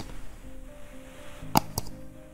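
A slow, breathy exhale blown out through pursed lips as if whistling, which slows the out-breath, over soft background music. There are two short clicks about one and a half seconds in.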